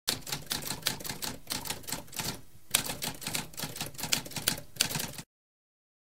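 Typewriter keys clacking in quick, irregular strokes, with a brief pause about halfway through, stopping about five seconds in.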